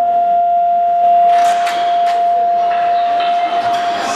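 Electronic school bell: one steady, high tone that starts suddenly and holds for about four seconds, signalling the change of classes. From about a second in, hallway clatter builds up underneath.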